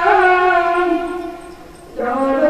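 A boy's unaccompanied voice, amplified through a microphone, holding one long melodic note that fades out about a second and a half in. A new sung phrase begins right at the end.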